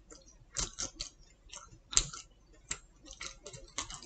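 A person chewing pizza with her mouth closed: irregular soft clicks, about three a second.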